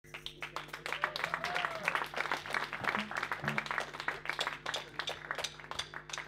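Audience applause and scattered hand clapping in a small room, irregular and fairly steady, with a faint steady low hum underneath.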